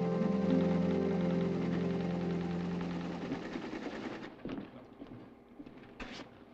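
Teletype printer clattering rapidly as it types out a message, under background music that fades out. The clatter stops about four seconds in, and a few separate clicks and knocks follow.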